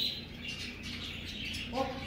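Budgerigars chirping close by: a run of short, high chirps.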